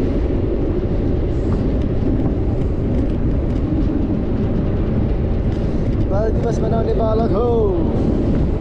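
Steady wind rush on the microphone of a camera riding along on a moving electric scooter, with a person's voice calling out briefly near the end.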